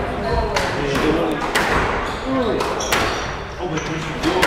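Squash ball being struck with rackets and smacking off the court walls during a rally: sharp cracks about a second apart, echoing in the hall, over background chatter.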